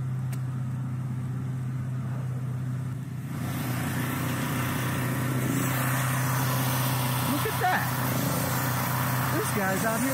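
Engine of a towable industrial air compressor running with a steady low hum. About a third of the way in a loud hiss joins it and holds.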